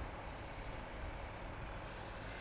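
Faint, steady low rumble of a vehicle engine idling.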